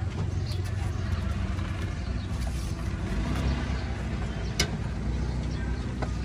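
Steady low rumble of motor vehicles on the road beside the stall, with a single sharp click about two-thirds of the way through.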